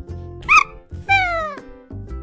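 Children's music with a steady beat and two cat meows: a short one about a quarter of the way in and a longer one that falls in pitch just after the middle.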